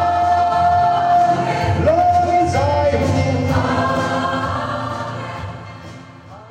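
Mixed choir of women and men singing a gospel song in parts, holding long notes; the singing dies away near the end.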